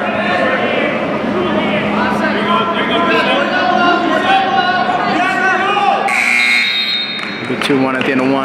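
Scoreboard buzzer sounding once for about a second, about six seconds in, marking the end of a wrestling period. Crowd chatter and shouts from the stands carry on throughout.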